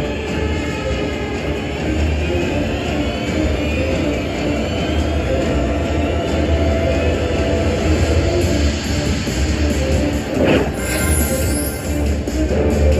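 Music and spinning-reel sounds from a Spartacus video slot machine during its free-spins bonus, over a steady low hum, with a short rising whoosh about ten seconds in.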